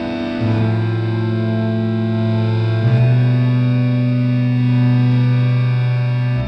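Background music: distorted, effects-laden guitar holding long sustained notes, the low note stepping up to a higher pitch about three seconds in.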